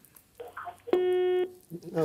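A single steady telephone line tone, about half a second long, heard through the studio's phone line after a faint hiss: the caller's line has dropped.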